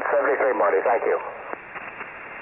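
A man's voice received over single-sideband ham radio, thin and narrow-sounding, over a steady receiver hiss. The voice stops a little past a second in, leaving only the hiss.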